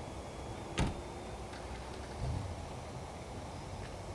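Steady low outdoor background noise with a single sharp click a little under a second in, and a dull low thump just past two seconds.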